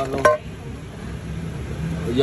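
A brief spoken word, then a steady low background hum with no distinct knocks or clinks.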